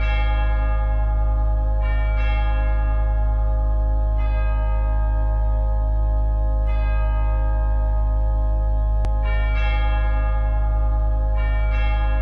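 Organ music imitating church bells: bell-like chords struck about every two seconds, ringing on over a steady held bass note.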